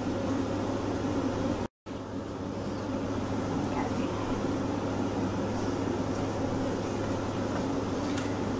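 Steady low room hum of a running fan or similar appliance, broken by a short dropout to silence just under two seconds in where the recording is cut.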